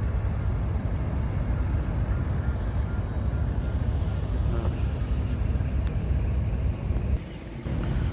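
Steady low rumble of a boat's engine, with a noisy haze over it. It drops briefly near the end.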